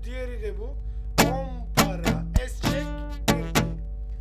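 Guitar strummed in a rhythm pattern, about seven strokes from about a second in. One of them is a short dry click with no ringing: the muted 'es' stroke, where the strings are silenced and then pulled. Voiced rhythm syllables run between the strokes.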